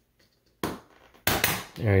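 A laptop's base cover snapping loose at its clips as it is pried up by hand: two sharp plastic clicks, about half a second in and again about a second in.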